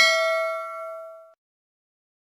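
Notification-bell sound effect: a struck chime tone with a few clear overtones ringing on and dying away a little over a second in.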